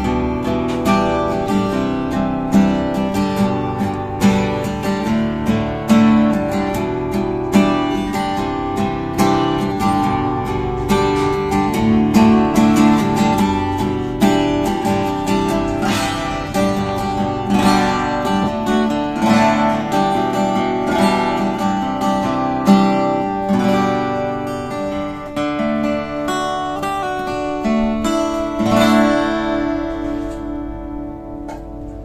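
Solid-top cutaway acoustic guitar played fingerstyle, with picked melody notes and strummed chords ringing together.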